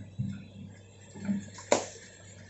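Hitachi crawler excavator's diesel engine running with a steady low hum, while branches and small trees crack and snap as its bucket pushes through them. There are a few sudden knocks, and the sharpest crack comes near the end.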